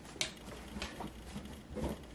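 A few sharp clicks and light knocks from drawer organizer pieces being handled and fitted into a clothes drawer. The first click, about a quarter second in, is the loudest.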